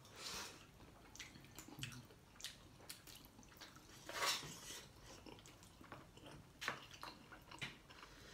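A person chewing a mouthful of spicy instant noodles, with faint wet mouth smacks and small clicks scattered through, and one louder brief noise about four seconds in.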